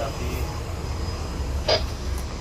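Steady low machinery rumble aboard a ship, with faint voices in the first half and one short, sharp noise near the end.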